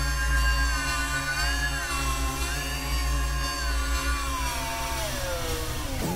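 Experimental synthesizer drone: a heavy low bass under many layered held tones with a buzzy edge, one pitch wavering and another sliding slowly downward near the end.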